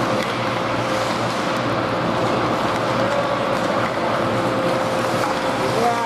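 Indoor ice rink ambience during a hockey game: a steady rushing noise with a constant hum, and a few faint clicks from the play.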